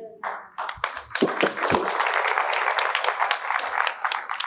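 Congregation applauding, with dense clapping that starts about half a second in and quickly builds to steady applause.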